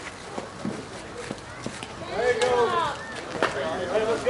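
Distant players' voices calling out across a softball field, starting about halfway through, after a few faint clicks in the first half.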